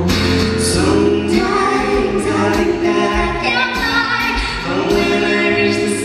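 Live pop song performed on stage: a woman singing lead into a microphone over a strummed acoustic guitar, with a sustained bass line underneath.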